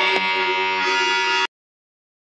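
Harmonium holding a steady reedy chord after the drum strokes stop; it cuts off suddenly about a second and a half in.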